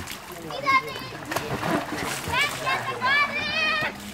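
Water splashing in an inflatable paddling pool as children play in it, with several short, high-pitched children's shouts.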